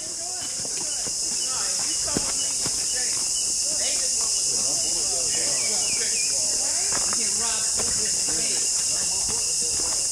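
Steady, high-pitched drone of a forest insect chorus, unbroken throughout, with faint voices underneath.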